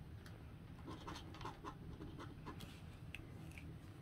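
Faint scratching of a plastic scratcher tool across a lottery scratch ticket's scratch-off coating, in short, irregular strokes.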